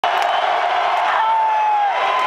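Arena crowd cheering at a heavy metal concert. A single long, held, high cry rises above it from a little past halfway.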